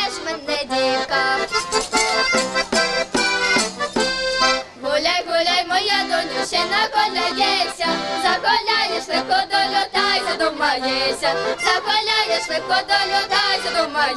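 Accordion playing a lively folk tune.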